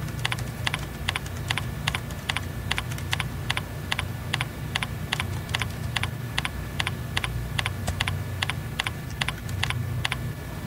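Typing on a computer keyboard: a run of sharp keystroke clicks, about three a second, stopping just before the end. A steady low hum runs underneath.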